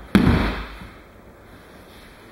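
A thrown aikido partner landing in a breakfall on the dojo mat: one loud thud just after the start, dying away within about half a second.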